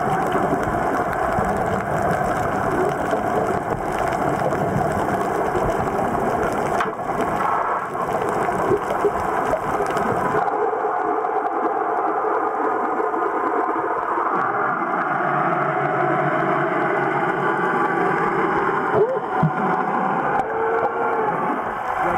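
Muffled underwater noise picked up by a submerged camera: a steady rushing haze with some muffled voice-like sounds, losing some of its deepest rumble about halfway through.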